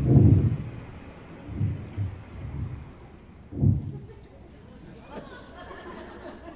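Several dull low thumps and knocks on a stage floor, the loudest right at the start and a few smaller ones over the next few seconds, with faint voices coming in near the end.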